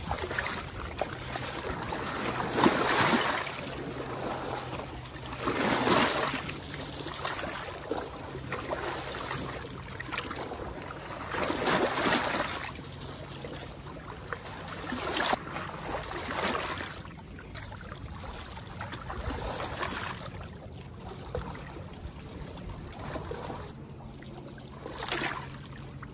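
Small waves lapping and washing against shoreline rocks, swelling every few seconds, over a faint steady low hum.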